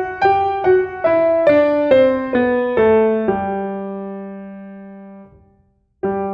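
Piano playing a G major scale descending note by note, ending on a held low G about three seconds in that rings and fades, then is cut off sharply a little before the end.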